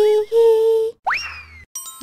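Cartoon logo jingle: a high cartoon voice sings the last letters of the name on held notes, then a quick upward swoop that slides slowly back down like a boing sound effect, and a short chime near the end.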